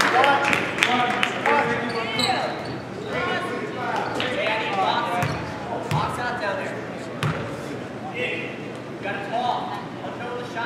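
Basketball bounced on a hardwood gym floor, a few separate thuds about halfway through, under talking voices of players and spectators echoing in the gymnasium.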